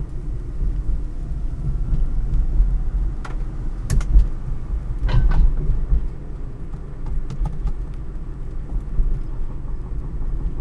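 Low, steady road and tyre rumble inside the cabin of a Toyota Tercel converted to 72-volt battery-electric drive, with no engine running. A few brief knocks come through, the loudest about four and five seconds in.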